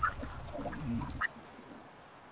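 Faint, short voice-like sounds over a low hum on a video-call line. The hum cuts off about a second in and it goes much quieter.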